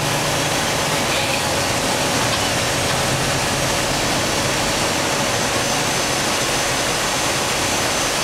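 Steady engine and drivetrain noise of a military armoured vehicle heard from inside its cabin, an even roar with a low hum that does not change.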